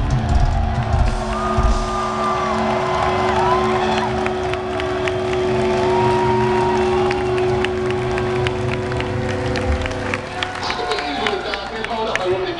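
A heavy metal band's last loud chord cuts off about a second in, leaving a steady amplifier tone that rings on for several more seconds. Over it, a concert crowd cheers, whistles and claps.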